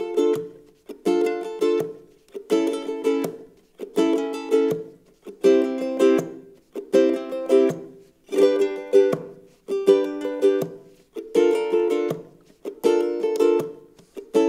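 Ukulele strummed down-up-down-up, with each round ended by a percussive thumb strike on the fourth string that mutes the chord. The pattern repeats at a steady, fast pace, about ten rounds.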